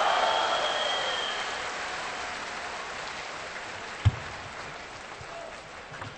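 Arena crowd applauding after a point in a table tennis match, dying away over several seconds. One sharp, low thump about four seconds in.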